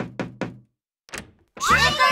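Quick knocks on a door, about four a second, then a short pause; near the end, children's voices begin shouting "Trick-or-treat!"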